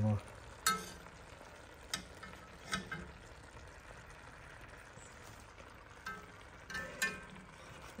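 Metal spoon stirring shredded lamb in an enamelled pot, clinking sharply against the pot about six times, over a faint steady sizzle of the meat cooking on low heat.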